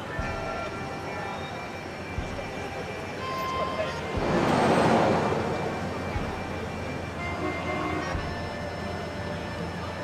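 Busy city street noise, with a vehicle passing close by near the middle that swells and fades over about two seconds.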